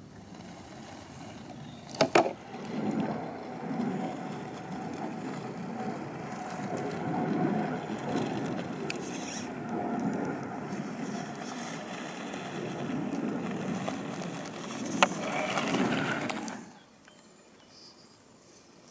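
RC rock crawler's electric motor and gear drivetrain whining steadily while it crawls, its tires grinding and scraping over rock, with a pair of sharp clicks about two seconds in and another near the end. The drivetrain cuts off suddenly a second or so before the end.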